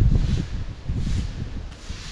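Wind buffeting the microphone: an uneven low rumble that comes and goes.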